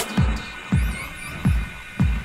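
Psy-trance track in a stripped-back passage. The rolling bassline drops out, leaving deep electronic kick drums that fall in pitch, a hit about every half to three-quarters of a second, with a faint wavering synth sweep high up.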